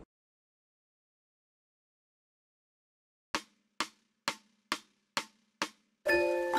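Silence for about three seconds, then six sharp, evenly spaced percussive clicks about two a second: the count-in of a guide backing track, marking the tempo before the music starts.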